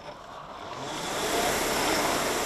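Concept2 rowing machine's air-resistance flywheel whooshing as a stroke is pulled, the rush of air growing louder over the first second and a half and then holding.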